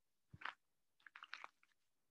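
Near silence broken by one short faint crackle and then a quick run of small clicks close to the microphone.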